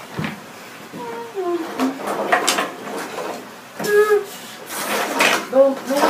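Several short, high-pitched wordless vocal cries made for the toys, with the clatter of plastic toys being handled on a wooden table between them.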